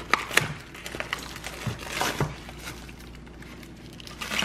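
Clear plastic wrap being peeled off a frozen dessert tray, crinkling in irregular bursts. A few sharper snaps fall in the first half-second and again around a second and two seconds in, and it grows quieter toward the end.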